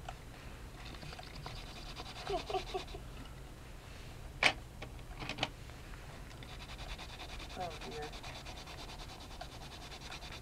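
Pencil scratching over a paper card in short strokes, faint and steady, stopping for a while mid-way. About halfway through comes a sharp click, then two lighter clicks.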